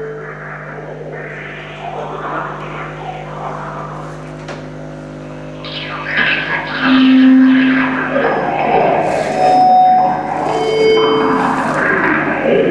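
Improvised electronic noise music from effects pedals and small electronic boxes: a steady low drone with pure held tones coming and going over washes of noise. It gets louder about halfway through, with short hissy bursts near the end.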